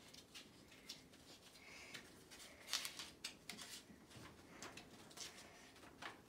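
Faint rustling and crinkling of a folded paper note being unfolded by hand, with a few sharper crackles about three seconds in.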